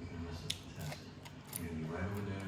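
Close-miked chewing of crisp salad (lettuce, cucumber and tomato), with two sharp crunches: one about half a second in and another a second later.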